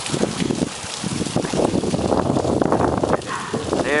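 A channel catfish struggling in the hands while a hook is worked out of its mouth: a rapid, irregular run of rubbing, slapping and knocking handling sounds that stops just before the angler speaks near the end.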